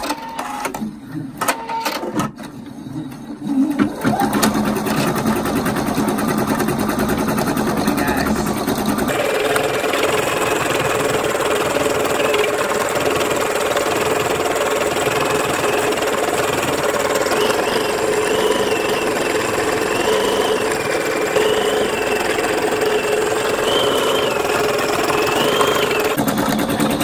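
Husqvarna Viking Topaz 40 sewing machine in embroidery mode, stitching out a design. A few clicks as it starts are followed by steady rapid stitching with motor whine. The sound changes about nine seconds in, and in the second half a high whine wavers up and down.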